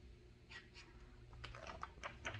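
Faint rustling and crinkling of a picture book's paper pages as they are handled and turned: a run of small crackles starting about half a second in.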